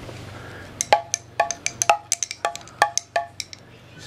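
Spinning pellet drum (Mexican monkey drum) twisted back and forth by hand, its bead strikers tapping the drumheads in quick, uneven clicks, often in close pairs, from about a second in. The taps stop shortly before the end.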